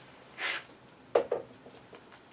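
A DeWalt DCG412B cordless angle grinder being set down upright on a workbench: a brief swish of handling, then two quick knocks a little past a second in as it lands and settles standing on its own.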